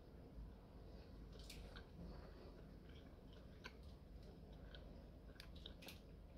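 Near silence with faint, scattered mouth clicks from chewing a candy with the mouth closed.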